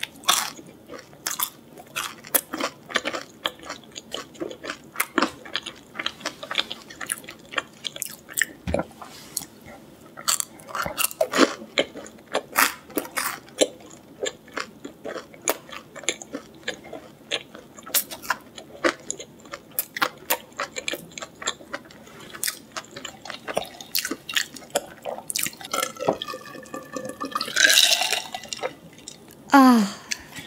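Close-up chewing of a crispy fried chicken strip: a dense run of small crunches and wet mouth clicks. Near the end comes a louder, longer stretch as a drink is taken from a glass of cola and swallowed.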